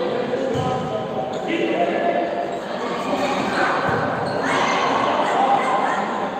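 Volleyball rally in a large echoing sports hall: a few sharp slaps of the ball being played, over continuous indistinct voices of players and spectators.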